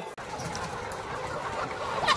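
Flock of laying hens clucking.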